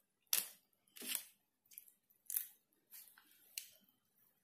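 Crispy fried chicken coating crunching as it is torn and chewed: about six short, separate crunches over four seconds.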